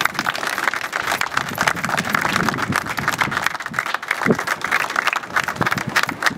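A small crowd applauding, steady clapping throughout.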